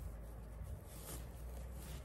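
Faint rustling of coarse burlap ribbon handled and pulled as a bow is tied, over a low steady hum.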